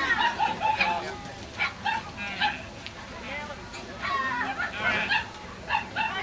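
A dog barking and yipping now and then over people talking in the background.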